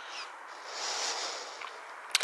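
Quiet woodland ambience: a soft rustling hiss that swells gently in the middle, with a faint short chirp near the start.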